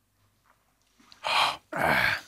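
Two loud, breathy exhalations starting about a second in, the second running into a voiced 'øh': men letting out their breath after swallowing a shot of strong snaps.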